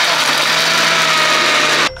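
Panasonic countertop blender running steadily as it blends a banana and frozen-blueberry protein smoothie, then switching off abruptly near the end.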